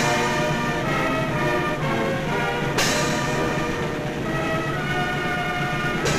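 Military band playing, with brass carrying held chords that change every half-second or so. There are two sharp crashes, one at the start and one about three seconds in.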